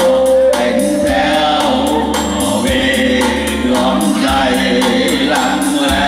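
Two men singing a song together through handheld microphones, their amplified voices over backing music with a steady beat.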